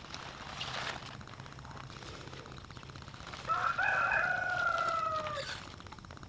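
A rooster crowing once, one long drawn-out crow of about two seconds that starts a little past the middle and falls slightly at its end.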